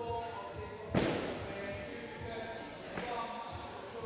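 A dumbbell striking the gym floor about a second in as it is lowered between snatch reps, with a fainter knock about two seconds later. Background music with a steady beat and a singing voice runs underneath.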